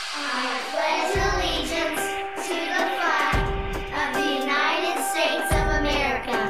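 Intro music with children's voices reciting the opening of the Pledge of Allegiance over held notes, with a deep low hit about every two seconds.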